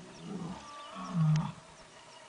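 A low, wavering animal growl, loudest about a second in.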